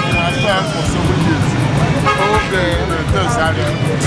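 Busy street-market din: many voices talking over music with a steady beat, and a vehicle horn tooting briefly right at the start.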